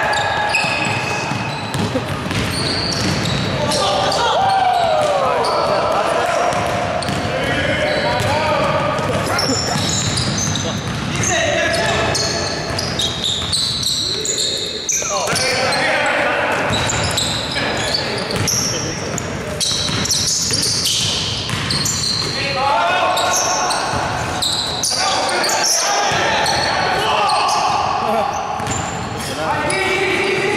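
Indoor basketball game: a basketball dribbled on a hardwood gym floor, with sneaker squeaks and players' voices calling out, all echoing in the gym.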